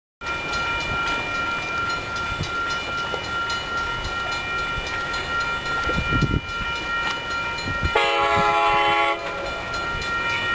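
Horn of a Capitol Corridor passenger train led by its cab car, one long chord-like blast of a little over a second about eight seconds in. A steady high ringing runs under it throughout, the grade-crossing signal's bell.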